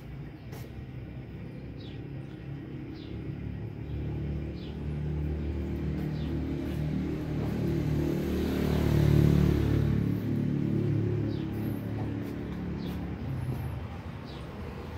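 Low rumble of a passing motor vehicle, growing louder to a peak about nine seconds in and then fading.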